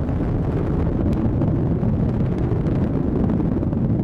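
Atlas V rocket's RD-180 booster engine firing in powered ascent: a steady, low rumble.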